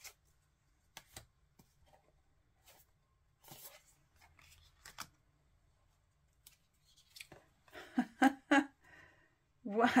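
Tarot cards being handled: a few soft clicks, taps and a brief papery slide in the first half as cards are pulled out and laid down. Near the end, a woman's short exclamations.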